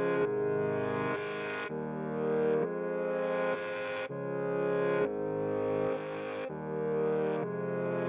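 Background music: sustained synthesizer chords that change every second or so.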